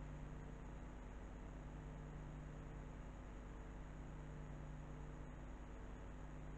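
Quiet room tone: a steady low hum with faint hiss, and no distinct sounds.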